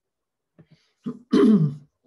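A woman clearing her throat once, a short rasping sound with a falling pitch about a second and a half in.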